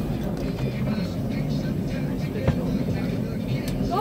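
Boat engine running steadily at low speed, a constant low hum, with faint voices over it and a single sharp knock about two and a half seconds in.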